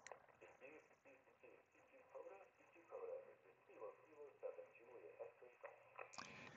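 Very faint playback of a recorded man's voice calling CQ POTA, coming from the FX-4CR transceiver's small built-in speaker; the voice sounds thin and narrow, like radio audio.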